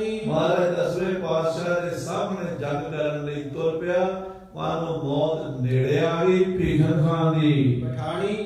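A man's voice chanting verses in a drawn-out, melodic recitation, with a short break for breath about four and a half seconds in.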